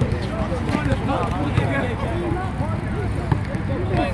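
Indistinct men's voices talking and calling out on and around a basketball court, over a steady low rumble.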